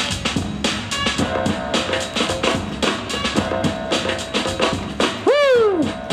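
Hip-hop breakbeat music for a breaking battle, with a steady drum-kit beat of kick, snare and rimshot. Near the end a loud pitched swoop rises and then falls.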